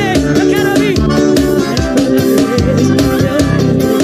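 Live piseiro band music from a stage show, with a steady drum beat under melodic lines.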